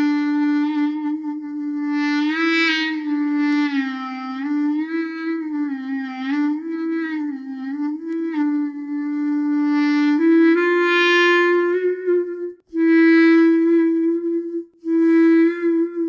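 SWAM Clarinet virtual instrument played from an Akai electronic breath controller: a held clarinet note is bent down and up several times with the controller's thumb pitch bend. About ten seconds in it settles into steady notes a step higher, broken by two short gaps near the end.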